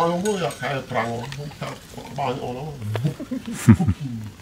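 A man's voice talking in a low pitch, with a short, louder low sound near the end.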